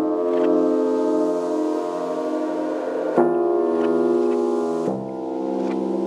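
Waldorf Iridium synthesizer playing sustained piano-like chords with long ringing tails, processed through an Elektron Analog Heat whose envelope follower ducks the drive at each attack and lets it swell back in the tails. New chords strike about three seconds in and again about five seconds in.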